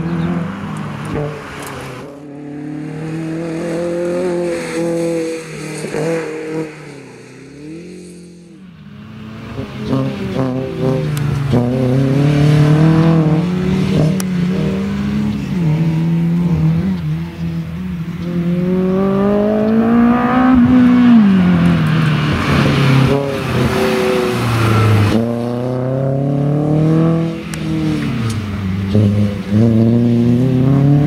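Toyota MR2 race car's engine revving hard round the circuit, its pitch repeatedly climbing and then dropping sharply at each gear change or lift. It dips briefly in loudness early on, then grows louder as the car comes closer.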